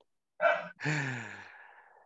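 A person's sigh: a short breath about half a second in, then a long voiced out-breath that falls in pitch and fades away.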